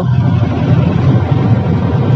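Steady low rumble of a Mahindra Bolero's engine and tyres, heard from inside the closed cabin while it cruises in fourth gear.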